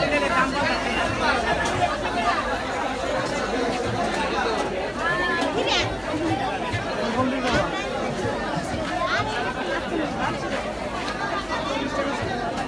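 Crowd babble in a busy fish market: many voices of shoppers and vendors talking over one another, steady throughout.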